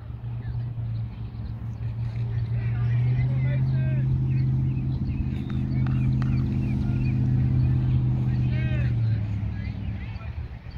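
A steady low motor hum, like an engine running close by, that grows louder about two seconds in, holds, and falls away near the end.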